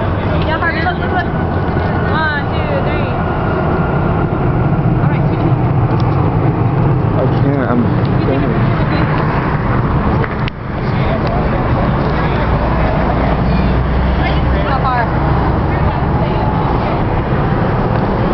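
Steady rumble of highway traffic passing below, with scattered voices of people chatting around it. The rumble dips briefly about ten seconds in.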